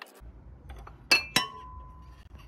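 A glass dish clinks twice against the rim of a glass mixing bowl as powdered sugar is tipped in, about a second in. The second clink rings on briefly as a clear tone.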